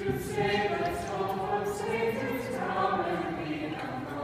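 A group of high school cast members singing together in chorus, a slow melody of held notes.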